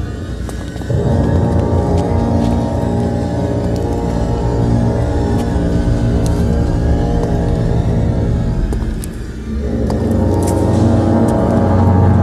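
Tense orchestral film score holding sustained chords; it thins out briefly about nine seconds in, then swells again.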